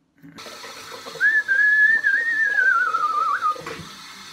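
Water running from a bathroom tap into the sink, turned on half a second in. Over the middle of it sounds a single high whistling note that wavers and slowly falls in pitch before it stops.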